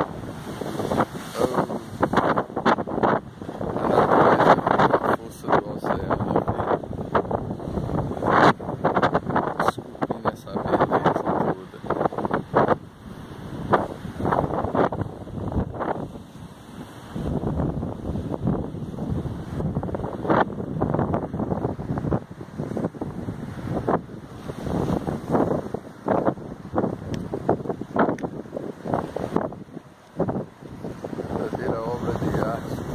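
Gusting wind buffeting the phone's microphone in short irregular blasts, over the wash of sea waves breaking on the rocks.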